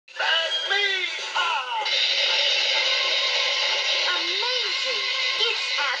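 Television audio picked up from the TV's speaker: voices over music.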